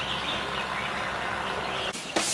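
Steady outdoor background noise with a low hum and faint bird chirps. It breaks off abruptly near the end.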